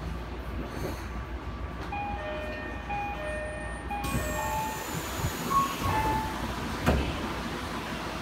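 Chiyoda Line subway train at a station, over a steady low rumble. About two seconds in, a two-note electronic chime repeats, then a rush of air and more chime tones follow. A single sharp thump comes about seven seconds in.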